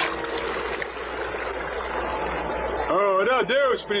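Cartoon sound effect of a rushing river, a steady watery hiss after a plunge into the water, shown by spreading ripples. A voice comes in about three seconds in.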